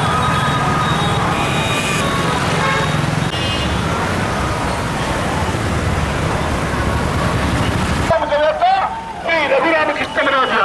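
Dense street traffic noise from slow-moving cars and motorcycles with crowd noise. About eight seconds in it cuts abruptly to a loud voice.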